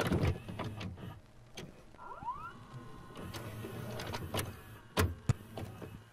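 Mechanical clicks and clunks from a small device, with a brief rising whine about two seconds in and two sharp clicks close together near the end.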